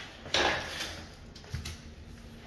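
T-bar pad applicator working polyurethane finish across a hardwood floor: a short scraping swish about a third of a second in, then a light knock about a second and a half in.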